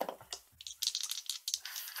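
Two plastic six-sided dice rattling and rolling into a dice tray: a quick run of clicks and clatters lasting nearly two seconds.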